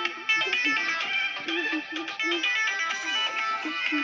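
A Hindi song playing: a singing voice over a busy melody of quick, bright high notes.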